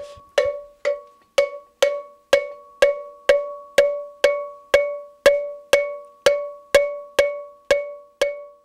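Hand-held cowbell struck in a steady beat, about two strikes a second, each strike ringing briefly before the next.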